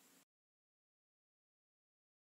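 Silence: a faint trace of room noise in the first moment, then the sound track goes completely dead.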